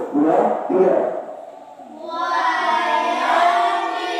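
A man's amplified voice through a microphone for about a second. Then, about two seconds in, a group of children's voices starts chanting Qur'an verses together in the melodic tilawah style.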